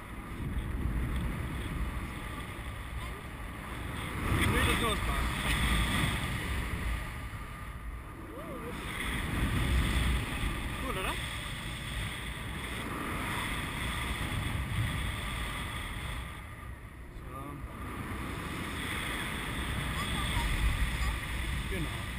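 Airflow rushing over the camera microphone of a tandem paraglider in flight, swelling and easing in strength several times.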